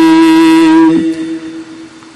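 Gurbani kirtan: a long note held steady in pitch, ending about a second in and dying away to a faint tail.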